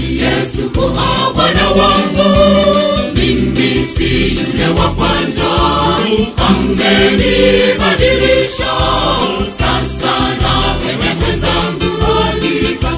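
Gospel song with a choir singing over a steady bass beat.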